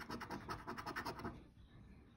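A scratch-off lottery ticket being scratched, faint quick rubbing strokes about six a second that stop about one and a half seconds in.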